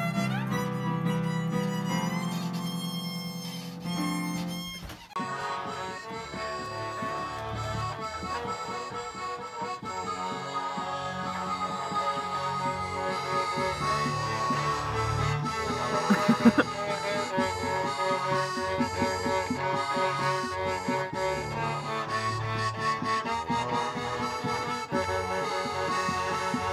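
Digital stage keyboard played live: held reedy notes for the first few seconds, breaking off abruptly about five seconds in, then a continuous two-handed passage of melody and chords over a moving bass line.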